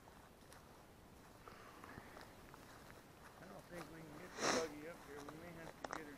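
A person sniffing once, sharply, through the nose about four and a half seconds in, over a faint voice humming or murmuring during the second half.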